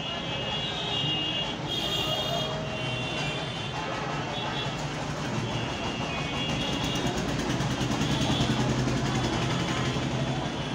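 A steady low mechanical hum with a fainter high whine above it, growing a little louder about seven seconds in.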